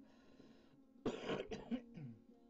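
A person coughs twice in quick succession about a second in, over a faint steady hum.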